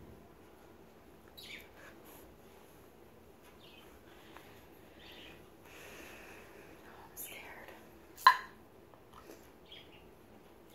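Quiet handling of a small glass baby food jar, with soft rustles and light clicks and one sharp click a little after eight seconds in.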